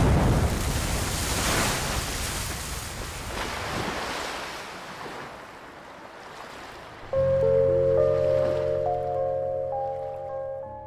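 Sea surf washing on a beach, swelling and slowly fading away. About seven seconds in, quiet music of held notes over a low bass starts suddenly.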